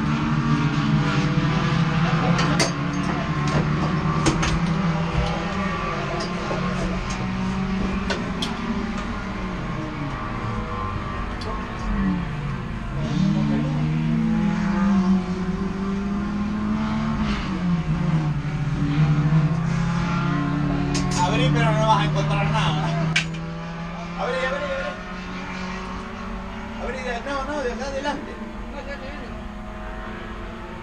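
A Volkswagen Gol race car's engine heard from inside the stripped, caged cabin, running with the revs falling and rising several times, then quieter after about 23 seconds.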